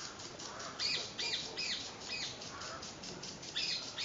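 Marmoset giving short, high-pitched chirping calls: a quick run of them about a second in and a couple more near the end.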